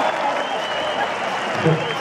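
Large concert crowd applauding and cheering, a steady dense wash of clapping and voices.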